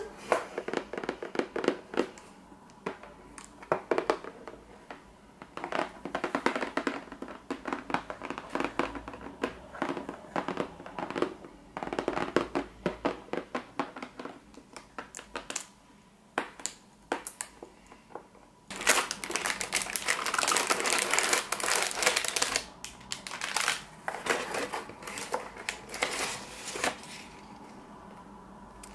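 Long fingernails tapping and scratching on a printed cardboard box, in quick clusters of light clicks. About two-thirds of the way through comes a few seconds of louder crinkling and rustling as plastic-bagged contents are handled.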